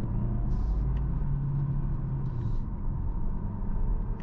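Interior cabin noise of a Hyundai Tucson Plug-in Hybrid while driving: a steady low rumble of tyres on the road with a faint hum from the drivetrain.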